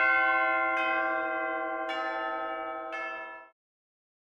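Bells struck about once a second, each strike ringing on over the last, then cut off suddenly about three and a half seconds in.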